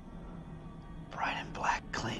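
A low steady drone, then about a second in a hushed, whispered voice.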